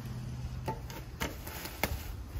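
Three sharp knocks, spaced about half a second apart, as the chaise lounger's metal handrail frames are set down on the wicker chair sections.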